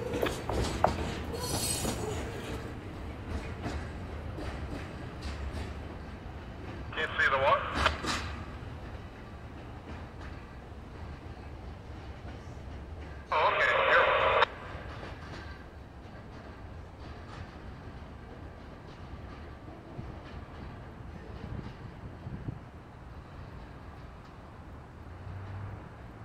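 Tail end of a freight train rolling past, its wheels on the rails making a steady low rumble that fades as the train moves away.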